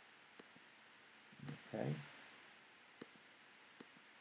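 Three faint, sharp single clicks of a computer mouse button, one shortly after the start and two close together near the end.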